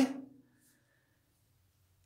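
A man's spoken word trailing off, then near silence: room tone.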